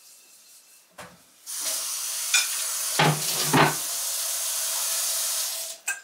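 Kitchen tap running into a stainless-steel sink, with a few knocks and clinks of dishes; the water starts about a second and a half in and cuts off just before the end.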